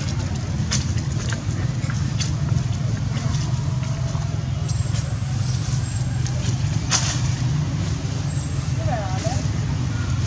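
A steady low rumble, like distant traffic or background murmur, with scattered light clicks and rustles and a brief chirp about nine seconds in.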